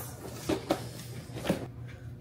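Clothes hangers clicking and knocking against one another a few times as new ones are taken out of their pack.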